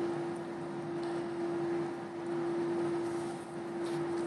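Doosan DL420 wheel loader running, with its cab overpressure unit, in a dusty shed: a steady machine drone carrying a strong constant whine.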